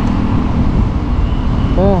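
Steady low wind and road rumble on the camera microphone while riding an electric motorbike through town, with no engine sound under it. A voice speaks briefly near the end.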